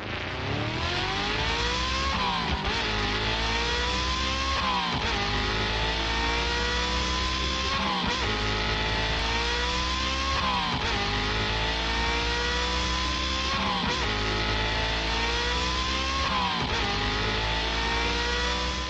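Race car engines accelerating hard, revving up in pitch and dropping back about six times, as through gear changes, over a steady low engine hum.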